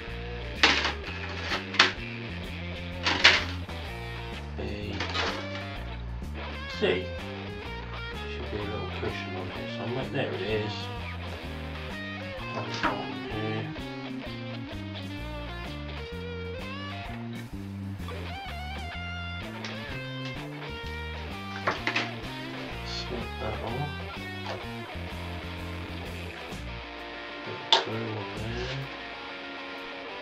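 Guitar-led background music, with a handful of short sharp clicks from plastic kit sprues and parts being handled on the table.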